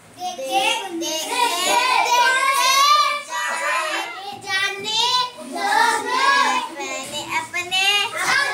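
A young girl singing unaccompanied, a rhyme in phrases with short breaks about four and seven seconds in.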